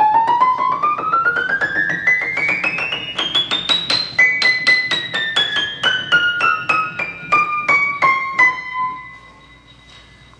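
An unrestored c.1890 Emerson upright piano, with major regulation problems, being played in a quick run of treble notes. The notes climb steadily for about four seconds, then step back down over the next four. The last note rings and fades out near the end.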